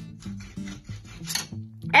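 Hand saw cutting through a thin piece of wood held in a bench vise, a run of quick rasping back-and-forth strokes, over steady background music.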